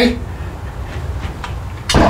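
A short pause in the talk over a steady low background rumble, with a faint click or two near the end.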